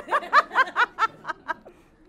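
A woman laughing at a joke: a quick run of 'ha' pulses, about five a second, loud at first and fading away within about a second and a half.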